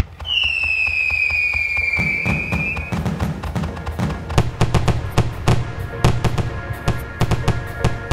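Fireworks going off: a whistle sliding slightly down in pitch over the first three seconds, then a quick run of sharp bangs and crackling shell bursts. Music plays along underneath.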